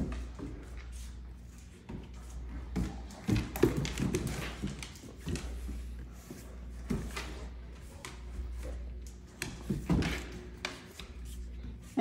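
Great Danes' paws and claws clicking and knocking irregularly on a hardwood floor as two dogs scuffle over a toy, over a steady low hum.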